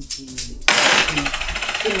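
A very fast, loud metallic jingling rattle, starting sharply just under a second in and stopping shortly before the end: a cluster of brass shaman's bells being shaken rapidly.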